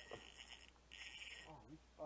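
Spinning fishing reel whirring faintly in two stretches, about a second and then half a second, while a hooked bass pulls on the line.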